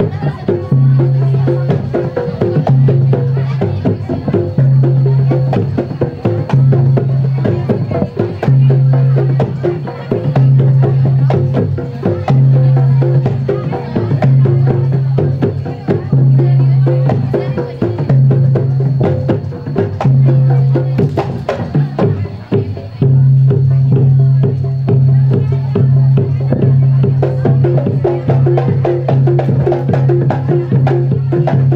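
Live kendang drumming accompanying pencak silat: rapid, dense hand strokes on barrel drums over a loud low tone that swells and breaks in roughly two-second cycles.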